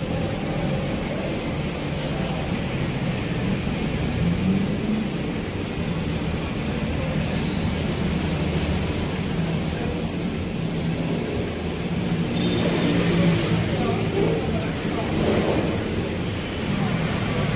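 Steady low rumble and hum of vehicles, with two faint, long, high whistling tones in the middle and faint voices near the end.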